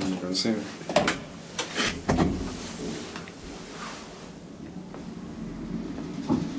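Two sharp clunks about a second apart from an old ASEA Graham traction elevator after a floor button is pressed, the sound of its doors shutting and the machinery engaging, followed by a faint low hum.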